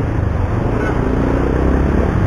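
Yamaha Byson motorcycle's single-cylinder engine running as it is ridden over a rough gravel track, with a steady low rumble of engine, wind and road. The action camera's microphone is too sensitive and takes all of it in, so it sounds very noisy.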